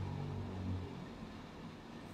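Quiet room tone with a faint low hum that fades out about a second in.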